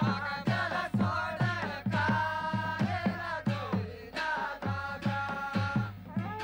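Himachali Nati folk dance music: drums beating a steady rhythm of about two strokes a second under a wavering melody line.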